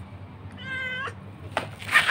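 A cat gives one short meow about half a second in, held at an even pitch. Near the end comes a louder, brief burst of rustling noise.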